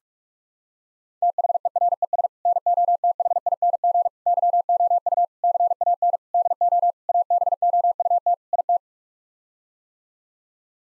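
Morse code at 45 words per minute, a single steady pitch keyed on and off in rapid dots and dashes. It starts about a second in and stops shortly before the end. It spells out the seven-word phrase "there's nothing you can do about it".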